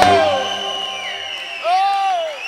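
A live band's final accented hit ends the song, a held note sliding down and fading away, then the audience applauds, with a voice calling out in a rising-then-falling cry near the end.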